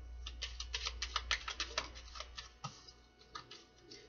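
A deck of tarot cards being shuffled by hand: a quick run of card flicks and taps, about eight to ten a second, that thins out and stops in the last second.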